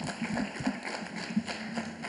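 Light, scattered applause from an audience in a hall: separate claps, with no clear rhythm.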